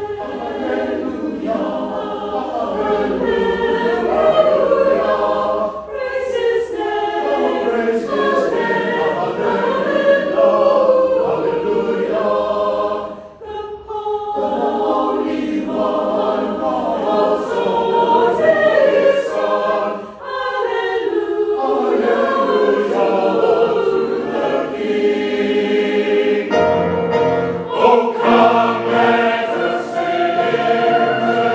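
Salvation Army songster brigade, a mixed choir of men's and women's voices, singing a hymn in sustained phrases with brief pauses between them.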